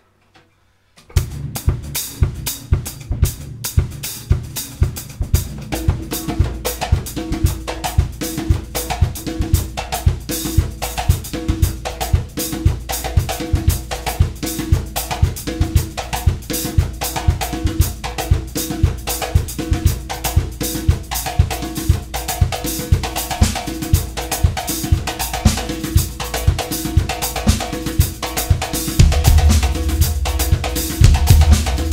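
Drum kit with snare, bass drum and cymbals playing a groove together with a timbal, a tall Brazilian hand drum, starting about a second in. The playing is a loose improvised jam, and the low end fills out near the end.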